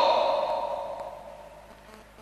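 A man's shouted "no, no" through a hall's public-address system dies away in the room's echo over about a second and a half.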